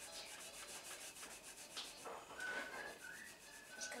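A rag soaked in acetone rubbed rapidly back and forth along a baseball bat, in quick even strokes, as the coating on the bat's surface comes off.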